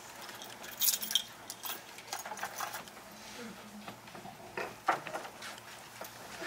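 Quiet hall with scattered light clicks and rustles of people moving and handling things. There is a cluster of sharper clicks about a second in and two more close together near the end.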